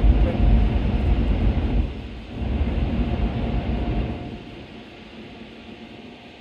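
Car wash air dryers blowing on the car, heard from inside the cabin: a loud low rushing in two surges that dies down about four seconds in.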